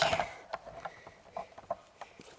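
Hunting backpack straps and fittings being handled: a bump at the start, then a few faint scattered clicks.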